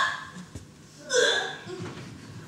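A single short vocal sound from a person about a second in, preceded by a faint click.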